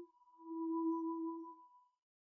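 Pure electronic tones with no speech: a low tone sounds briefly at the start and again for about a second and a half, under a thinner, higher tone held until the end.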